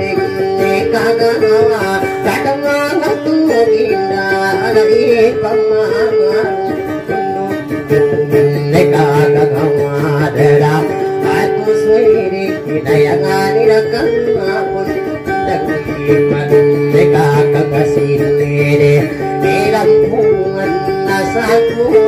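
Acoustic guitar playing a steady accompaniment, with a short melodic phrase recurring every few seconds, in the style of a Maranao dayunday.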